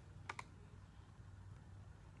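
Near silence, broken by two quick faint clicks about a quarter of a second in, from the computer as the comment page is scrolled.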